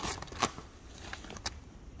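Crinkling and rustling of the shiny red wrapping paper stuffed in a gift bag as a child's hands dig through it and pull out an item. It comes as a few short crackles, the loudest about half a second in.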